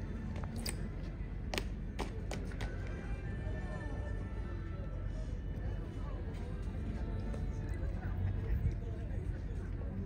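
Outdoor background of a low wind rumble, with faint music and distant voices, and a few sharp clicks in the first three seconds.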